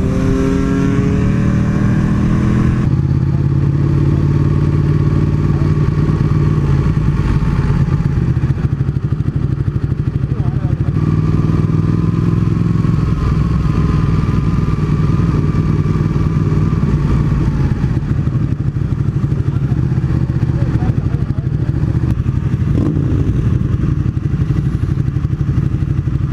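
Motorcycle engine heard from the rider's own sport bike: rising in pitch as it accelerates for the first few seconds, then a steady, lower engine note as the bike rolls slowly along.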